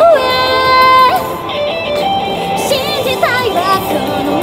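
Female vocalist singing live into a handheld microphone over amplified backing music with guitar. She holds one long steady note for about the first second, then moves into shorter phrases with pitch bends.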